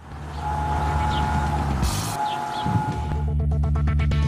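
Background music: low sustained bass notes under a held high tone, with a fast, regular beat of short hits coming in about three seconds in.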